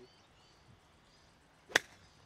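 A golf club striking the ball once: a single sharp click about three-quarters of the way through, after a quiet swing. It is a lofted pitch shot, hit high over a tree.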